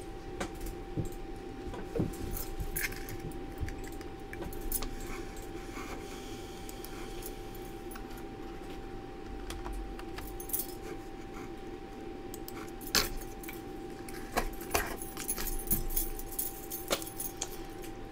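Scattered light clicks and metallic clinks from hand-handling of oysters, an oyster knife and metal pieces on a cloth-covered table, over a steady hum.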